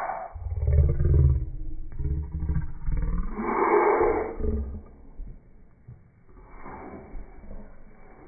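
A person's loud, rough, growling vocal noises close to the microphone, in bursts through the first few seconds and dying down after about five seconds.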